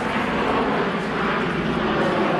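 A steady rushing noise with no distinct pitch or strokes, swelling slightly about half a second in.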